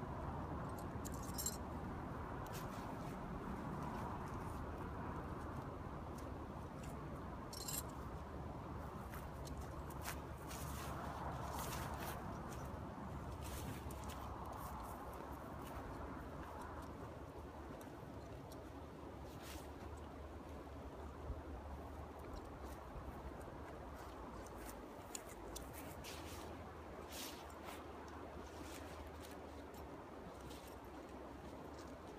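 Faint handling sounds of a tent being pitched: scattered light clicks and knocks with some rustling over a steady low background.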